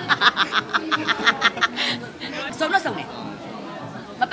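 A man laughing in a quick string of short, even laughs lasting about two seconds, followed by a few words of speech.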